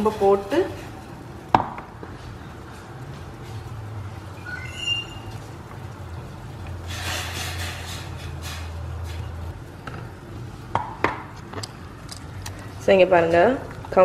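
Kitchen sounds at a steel pot on a gas stove: a few sharp knocks and clinks of steel utensils, a brief high squeak about five seconds in, and liquid poured into the pot for about two seconds around the middle, over a steady low hum.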